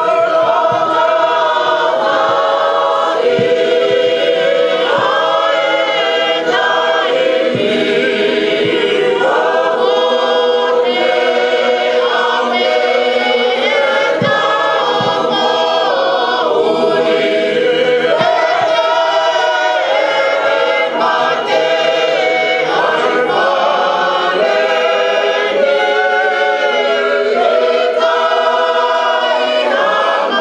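A church choir singing a hymn, many voices together, continuous and loud.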